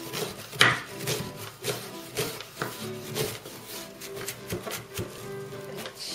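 A kitchen knife chopping an onion on a wooden cutting board in quick, uneven strokes, over background music.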